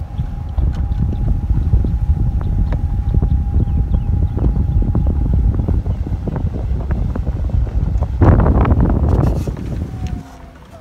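Golf cart driving across a fairway, a steady low rumble of the running cart and wheels with wind buffeting the microphone. It gets rougher and louder for a second or so near the end, then cuts off as the cart stops.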